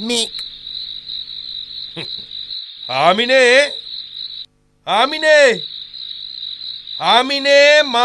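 Steady, high-pitched chirring of crickets as night ambience, cutting out for a moment about halfway through. A man's voice sounds three times over it, in drawn-out utterances at about three, five and seven seconds in.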